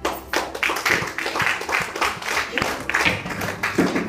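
Hands clapping loudly and close by, a quick run of sharp claps at about four or five a second.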